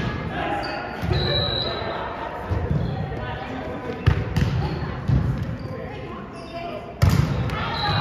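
Volleyball rally in a reverberant gymnasium: the ball is struck about five times at roughly one- to two-second intervals, the last hit near the end being the loudest, with players calling out between the hits.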